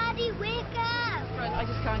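A person crying in distress: several high-pitched wails that fall in pitch, over a steady low engine hum from idling vehicles.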